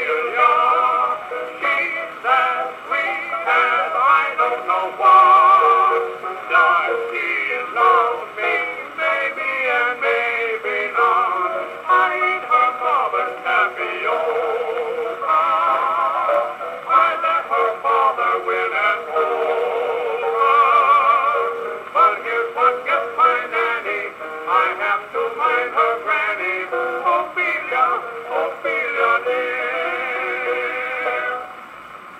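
Music from a 1924 Perfect 78 rpm disc record played acoustically through the horn of a circa-1910 Columbia 'Sterling' Disc Graphophone. The sound is narrow and thin, with no deep bass or high treble, and the notes waver.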